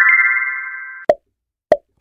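A bright chime sound effect whose quick run of rising notes rings on as a chord and fades away over about a second, marking the end of the countdown timer. It is followed by two short pops about half a second apart.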